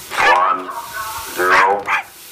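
A dog barking twice, two drawn-out barks that each fall in pitch, as it snaps at the spray from a garden hose.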